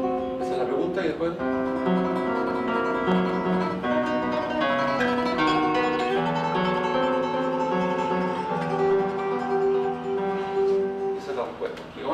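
Nylon-string classical guitar played solo: a melody of held, plucked notes over a bass line, forming one phrase in question-and-answer form.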